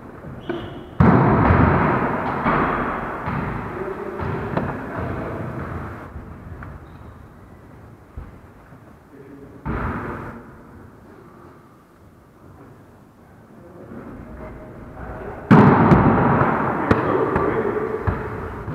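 Volleyball struck hard three times in a gymnasium, each hit a sudden bang that rings on in the hall's echo: a loud one about a second in, a lighter one near ten seconds, and another loud one near the end.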